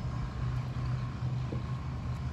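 Steady low hum of a motorboat engine running.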